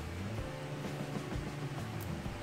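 Soft background music with a few steady, sustained low notes.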